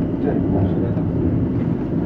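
Running noise of an AOMC metre-gauge electric train heard from inside the car: a steady rumble of wheels on rail and traction equipment as it moves along the track.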